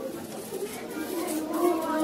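Children's voices starting a held sung note, faint at first and growing louder toward the end, as a children's group song begins.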